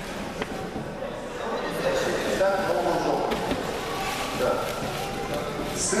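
Indistinct voices talking in a large, echoing hall, with a couple of faint clicks.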